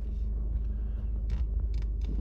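Steady low rumble of a car's engine and tyres heard from inside the cabin while driving slowly, with two short clicks in the second half.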